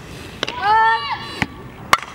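Sharp cracks of a softball being hit and fielded during infield drills, the loudest near the end, around a shouted call of the base number.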